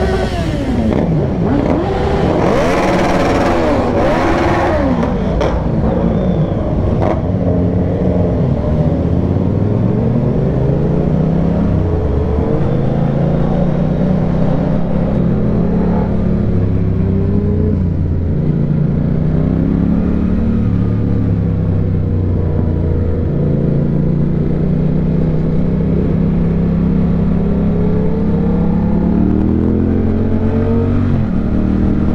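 Yamaha Tracer 7's parallel-twin engine, fitted with an aftermarket DSX-10 exhaust, pulling at low road speed. Its note rises and falls with throttle and gear changes. In the first few seconds the engines of other motorcycles in the group rev loudly around it, several notes rising and falling at once.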